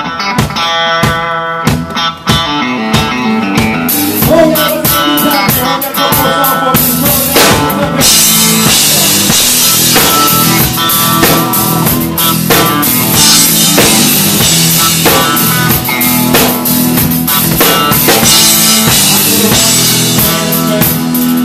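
A live country-rock band playing the instrumental opening of a song: electric guitar notes over drum-kit hits at first, then the full band comes in about eight seconds in, with the drums and cymbals driving a steady beat.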